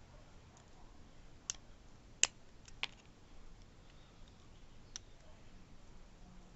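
Faint, sharp metal clicks, about four scattered through, the loudest a little over two seconds in, as a wire piston-pin retaining clip is worked into its groove in the piston with needle-nose pliers.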